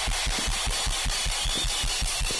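Drum kit playing fast, even bass-drum hits, about seven a second, over the steady noise of a cheering congregation.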